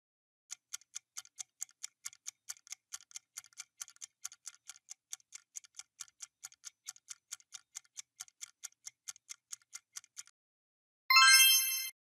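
Countdown-timer sound effect: a clock ticking at about four ticks a second for roughly ten seconds, then stopping. Near the end a short chime sounds as time runs out and the correct answer is revealed.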